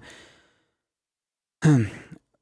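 A man's voice trails off into a pause of about a second, then near the end comes a short vocal sound falling in pitch, like a sigh or hesitation sound, before he speaks again.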